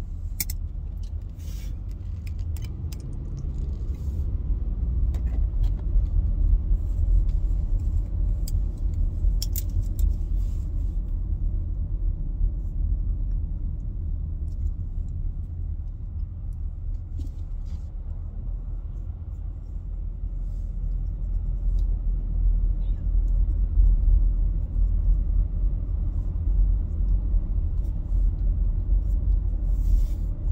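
Car interior road and engine rumble in slow stop-and-go traffic, a steady low drone that swells and eases. Scattered short clicks come in the first ten seconds or so.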